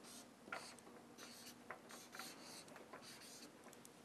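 Marker pen writing on a flipchart: a faint run of short scratchy strokes.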